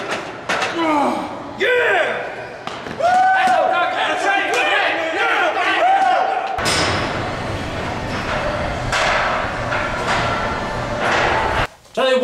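Men shouting and whooping in a gym after a bench-press set, with thuds. About six and a half seconds in, a loud, harsh, noisy stretch takes over and then cuts off suddenly near the end.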